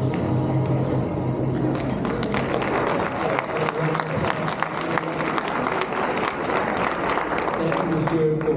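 A crowd applauding over background music, the clapping growing denser from about two seconds in, with voices in the crowd.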